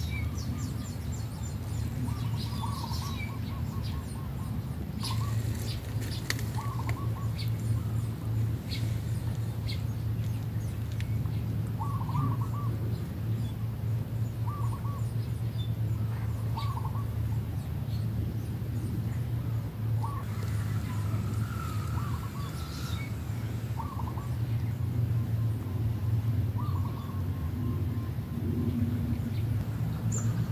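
Birds calling outdoors, short chirps and calls repeating every second or two with thinner high chirps between them, over a steady low hum.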